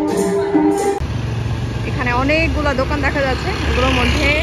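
Music for about a second, then an abrupt change to street noise: a steady low traffic rumble with people talking over it.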